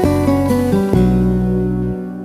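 Instrumental enka karaoke backing track, guitar-led: a short run of notes stepping down, then a chord held from about a second in.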